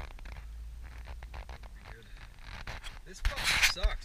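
Low steady rumble of a car moving slowly in traffic, heard from inside the cabin, with rubbing and scraping from the camera being handled and turned. A loud, harsh burst with a voice in it comes about three seconds in.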